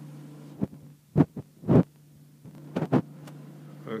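Several dull thumps and knocks from the handheld camera being moved and handled, the two loudest in the first half and a quicker pair later on, over a steady low hum.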